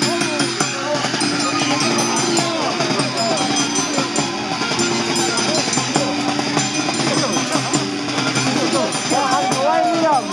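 Live Andean violin and harp music for the Negritos dance, a quick wavering violin line over steady low harp notes, with crowd voices talking and calling over it.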